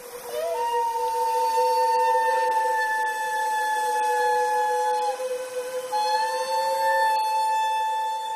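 Soundtrack drone: a held chord of steady, whistle-like tones. The upper note breaks off about five seconds in and returns a little higher roughly a second later.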